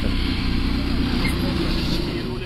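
A motor vehicle engine running steadily, a low even hum.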